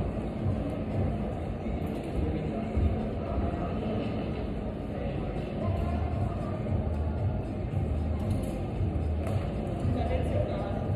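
Steady low rumble of the background noise in a large indoor climbing gym hall, with no single event standing out.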